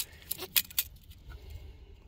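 A few light metallic clicks and rattles within the first second, from a steel tape measure being held against the bolts of an engine's flywheel housing, then only a faint low background.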